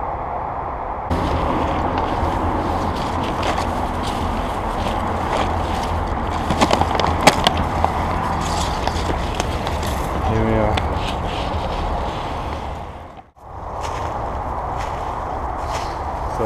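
A steady rushing noise with a low rumble on a handheld camera's microphone outdoors, with a few sharp clicks and a faint voice under it. It starts abruptly about a second in and drops out briefly near the end.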